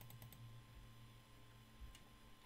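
Near silence: room tone with a faint low hum, and a short run of faint rapid clicks right at the start.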